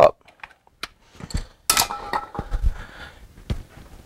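A few scattered knocks and handling clunks, with a short clattering rattle about two seconds in.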